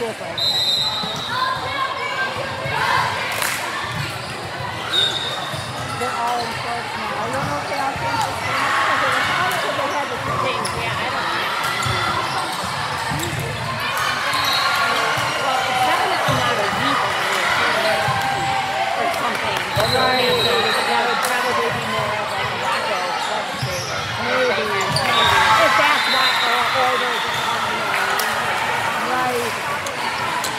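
Busy gymnasium ambience: many overlapping voices chattering and calling out, with volleyballs thumping on the hard floor and being struck, echoing in the large hall.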